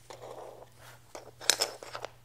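Dominoes and Lego bricks handled by hand: a soft rustle, then several sharp clicks, the loudest about one and a half seconds in, as dominoes are set into a Lego-brick template.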